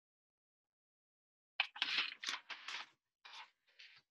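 Writing by hand on paper: a quick run of scratchy strokes starting about a second and a half in, then two shorter bursts near the end.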